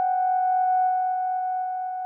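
The song's final chord held as steady, pure electronic tones. A faint rippling in the lower notes dies away within the first second, and the chord then holds on, easing slightly in level near the end.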